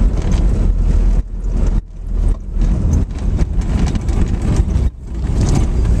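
Low, gusty rumble of wind on the microphone with tyre and road noise from an electric Porsche 914 conversion driving slowly, the sound dropping out briefly several times.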